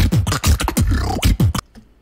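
Beatboxing into a microphone: a fast run of deep kick-drum sounds and sharp clicks made with the mouth, cutting off suddenly about a second and a half in.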